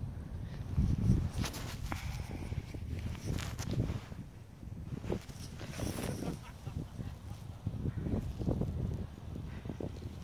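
Footsteps crunching irregularly on icy, crusted snow, with wind buffeting the microphone.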